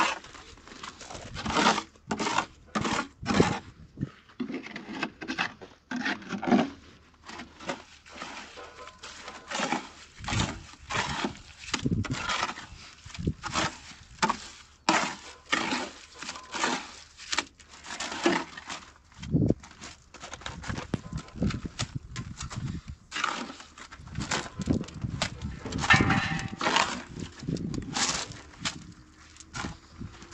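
Steel trowel scraping through cement mortar in a wheelbarrow and slapping and smoothing it onto a concrete-block wall, in irregular strokes that come every second or so.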